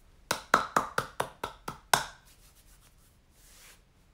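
A quick run of about eight sharp hand claps, roughly four to five a second, stopping after about two seconds.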